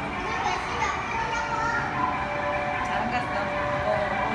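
Indistinct chatter of several children's voices talking over one another.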